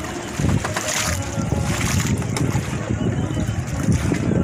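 Wind buffeting the microphone in an uneven, gusty rumble over open sea water, with faint voices in the distance.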